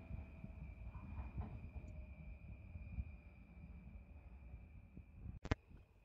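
Faint open-air railway station ambience: a low, even rumble with a thin, steady high-pitched tone, broken by one sharp click about five and a half seconds in.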